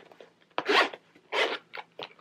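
Zipper of a hard-shell pencil box being pulled open in two pulls a little under a second apart, followed by a few light clicks.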